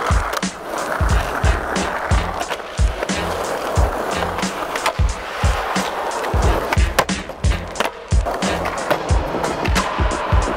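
Skateboard wheels rolling on concrete, with the board and trucks knocking and scraping during tricks, under music with a steady drum beat.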